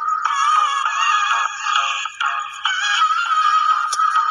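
Background music with a high-pitched, synthetic-sounding vocal melody, thin, with no low end.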